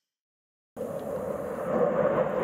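Silence, then about three-quarters of a second in the steady engine noise of an airliner in flight starts abruptly and keeps going.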